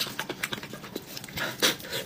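Close-miked chewing and lip smacking while eating braised chicken: irregular wet mouth clicks, with a louder smack about one and a half seconds in.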